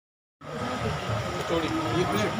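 A half-second gap of dead silence at an edit cut. Then voices and the general noise of a busy street market come back, with a thin steady tone running under them.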